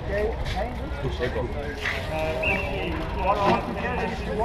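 Several people talking at once in the background, over a steady low rumble.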